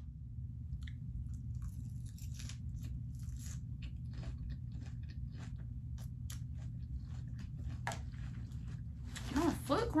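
Someone chewing a crunchy lettuce salad: irregular crisp crunches and bites, over a steady low hum.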